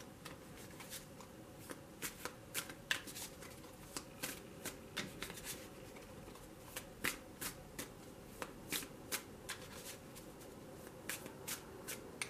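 A tarot deck being shuffled by hand. The cards make sharp, irregular flicks and snaps in quick clusters, with brief pauses between handfuls.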